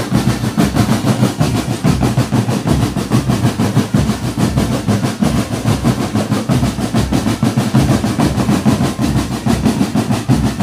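Marching drum band playing a fast, continuous drum beat with dense rapid strokes throughout.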